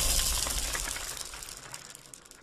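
Crackling, shimmering sound effect of a TV channel's logo sting, fading away steadily.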